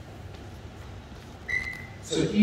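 A short, steady high-pitched tone lasting about half a second, starting about one and a half seconds in, over a quiet pause in a hall's room tone.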